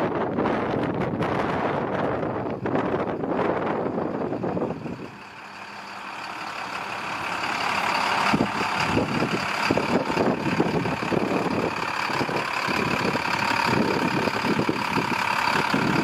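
Shuttle bus engine idling, growing louder over the second half, with a steady high whine on top. Wind buffets the microphone for the first few seconds.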